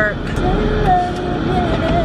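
A voice singing a few held, wavering notes with no clear words, over the low rumble of a car interior.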